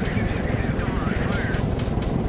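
Steady rumbling drone of aircraft engines, with faint radio voices over it.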